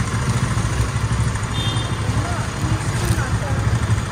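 Street traffic: a steady low engine rumble from vehicles idling and passing, with faint voices mixed in.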